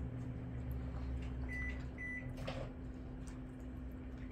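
A steady low appliance hum with two short high electronic beeps about a second and a half and two seconds in. Faint clicks come from small dogs eating from bowls.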